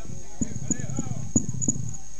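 Indistinct voices with a run of about five low knocks, roughly three a second, over a steady low hum and a thin high-pitched whine.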